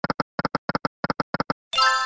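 Video slot game sound effects: short electronic double-clicks, about three pairs a second, six pairs in all as the reels stop one after another. Then a bright, ringing synthesized chime begins near the end.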